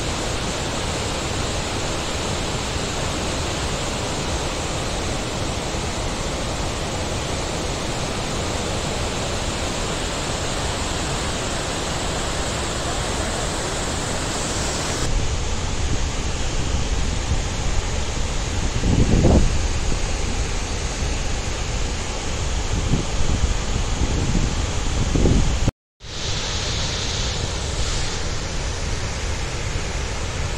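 A large waterfall's steady rush of falling water, bright and hissing up close at first. About halfway through it becomes duller and lower, heard from further off below the falls. In the second half, gusts of wind buffet the microphone a few times.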